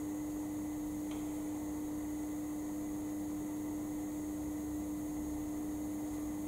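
Steady electrical hum on one low tone, with faint hiss of room noise; a small click about a second in.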